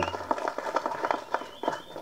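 Scattered hand clapping from a small group: irregular, sharp claps.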